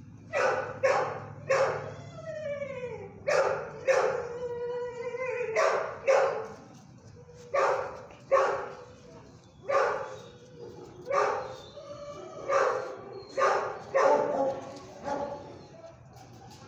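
A dog barking in loud, sharp single barks, about one or two a second, with two drawn-out whining calls that fall in pitch early in the run.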